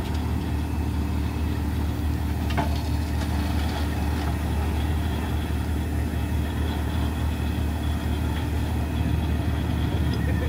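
Heavy-duty wrecker truck's diesel engine idling steadily, a deep even hum.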